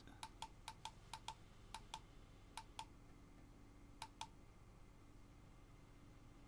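Faint clicks of a computer mouse, about six quick pairs of clicks spread over the first four and a half seconds, made while adjusting a webcam's focus and zoom.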